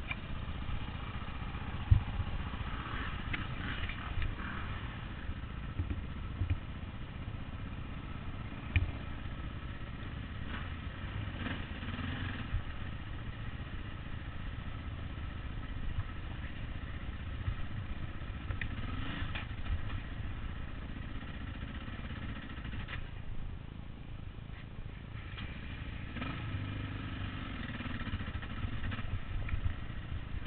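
Dirt bike engine running at low revs as it is ridden slowly over rocks, the revs rising briefly a few times as the throttle opens. There are a couple of sharp knocks along the way.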